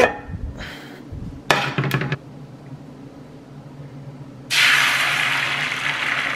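Metal pans clattering and knocking as a frying pan is pulled from a stack of pans in a cabinet, with a ringing clank about one and a half seconds in. From about four and a half seconds in, a steady loud hiss of egg whites sizzling as they are poured into a hot frying pan.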